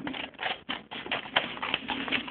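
Paper rustling and scraping as a paper cut-out is handled and cut close to the microphone: a quick, irregular run of crisp rustles.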